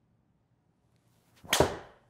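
Golf driver striking a teed ball about one and a half seconds in: a faint swish of the swing, then a single sharp, loud crack of the clubhead on the ball that dies away quickly.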